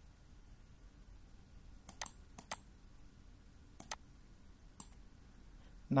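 Computer mouse button clicking: about five sharp clicks between two and five seconds in, some in quick pairs, over a faint low hum.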